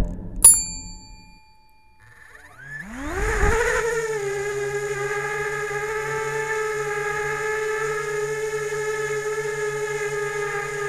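A short ding about half a second in, then a quiet gap. About three seconds in, the Parrot Bebop 2's four motors spin up with a rising whine as the propellers lift it off, settling into a steady hovering whine of several tones, heard close up from a camera mounted on the drone.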